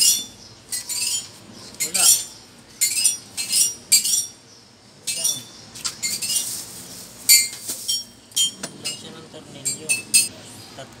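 Metal bolts and screws from a chair assembly kit clinking against each other and against small plastic parts as they are picked up and sorted. The clinks come as a string of short, sharp, ringing taps.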